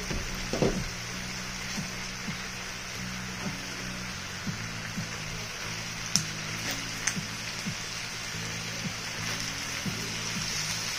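Oxtails and red onions sizzling steadily in a skillet under soft background music of held low chords, with a few light clicks of a utensil against the pan about six and seven seconds in.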